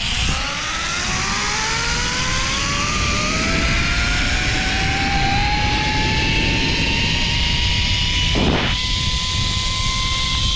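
Zipline trolley's pulley wheels whining along the steel cable, the pitch rising steadily as the rider gathers speed, over a heavy rush of wind on the microphone. The whine briefly breaks about eight and a half seconds in.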